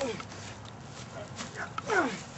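A person's short yells, each falling steeply in pitch: one at the start and another near the end, with a few sharp clicks between them.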